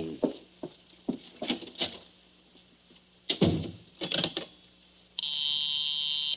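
Radio-drama sound effects of a telephone call being placed: a few scattered clicks and knocks as the telephone is handled, then a telephone ring buzz about five seconds in, a steady multi-tone buzz lasting just over a second that cuts off sharply.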